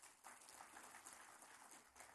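Faint applause from an audience: an even patter of many hands clapping.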